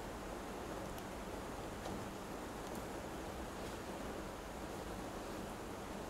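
Faint steady room hiss with a few faint small clicks and rustles as jin pliers crush the bark on a yew branch.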